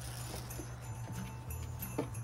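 Faint handling sounds from inside a cardboard box: a few light knocks and rustles as items are moved around, over a steady low hum.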